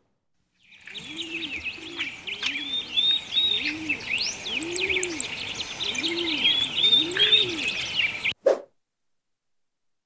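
Birdsong: many small birds chirping and whistling, with a dove's low cooing call repeating underneath. It starts about a second in and cuts off abruptly a little after eight seconds, followed by one brief short sound.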